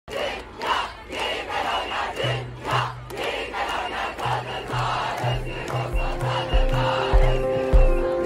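Large protest crowd shouting and chanting in repeated bursts. An electronic music track rises underneath, with a low bass note from about two seconds in and deep beats from the middle onward.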